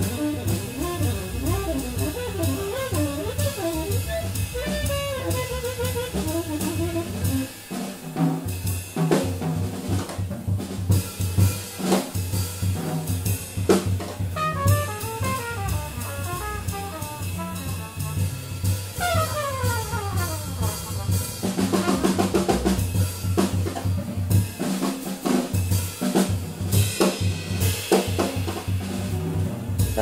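Jazz drum kit played busily and without a break, with snare, bass drum, rimshots and cymbals, in a live small-group jazz performance. A few short pitched runs sound over the drums, one falling run about two-thirds of the way in.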